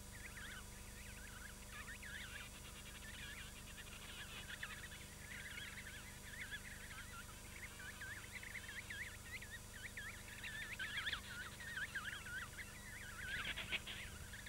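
Faint chorus of emperor penguin chicks' whistling calls: many short, high chirps that rise and fall quickly, overlapping throughout, with a few busier spells near the end.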